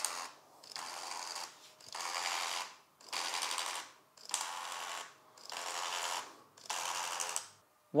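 Motorized film transport of a Cameradactyl Mongoose 35mm auto scanning holder pulling the film on frame by frame in fast mode: short mechanical whirring runs about once a second, seven in all, each separated by a brief pause.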